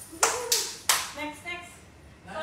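Three sharp hand claps in quick succession, about a third of a second apart, followed by a few quiet vocal sounds.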